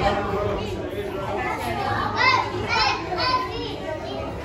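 Background chatter of several voices, with high children's voices standing out from about two seconds in.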